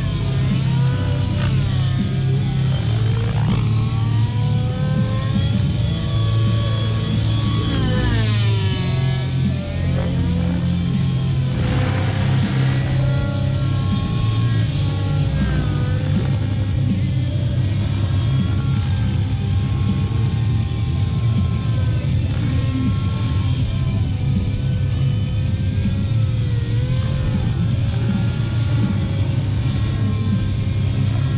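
Trex 700 nitro RC helicopter with an OS 91 two-stroke glow engine flying, its engine and rotor running steadily, with the pitch sweeping up and down repeatedly as it manoeuvres and passes.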